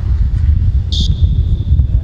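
Loud, uneven low rumble of wind buffeting the microphone, with a short high-pitched chirp about a second in.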